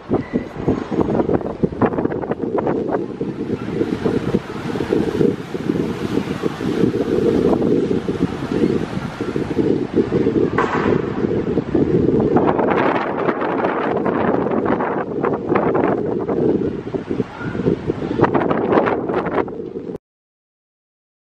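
Wind buffeting the microphone on the open deck of a moving cruise ship: a loud, uneven rumble with stronger gusts partway through.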